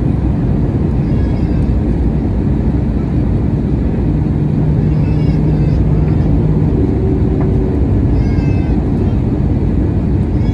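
Steady cabin roar of an Airbus A321neo descending on approach, from its CFM LEAP-1A engines and the airflow. A short, high-pitched wavering sound recurs about every three to four seconds, and a low steady hum joins in from about four to seven seconds in.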